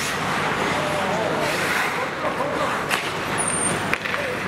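Ice hockey play on a rink: a steady scrape and hiss of skate blades on the ice, with players' distant calls and one sharp stick-on-puck clack about three seconds in.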